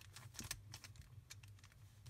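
Faint, irregular clicking of a plastic Megaminx puzzle's faces being turned by hand.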